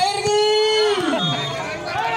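A man's voice drawing out one long, high shouted vowel for about a second, then sliding down in pitch: a volleyball commentator's exclamation.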